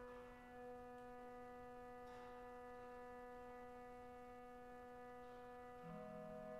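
Pipe organ holding a soft, sustained chord, steady and unchanging; near the end the harmony shifts as a lower note comes in.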